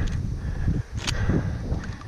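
Wind buffeting a head-worn action camera's microphone, with footsteps through wet grass and one sharp click about a second in.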